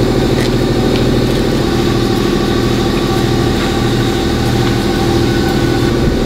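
A steady mechanical drone of a running motor, its tone shifting slightly a little under two seconds in, with a few faint squirts of a trigger spray bottle spraying cleaner onto a fabric convertible top in the first couple of seconds.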